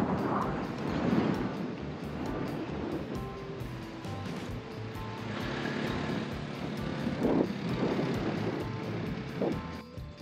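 Strong wind buffeting the microphone, with surf behind it, under background music that holds steady notes from about three seconds in.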